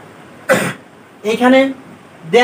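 A man gives one short cough about half a second in, followed by a brief spoken sound.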